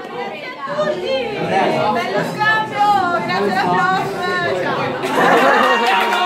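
Lively chatter of many young voices talking over each other around a dinner table in a large room, growing louder near the end with laughter.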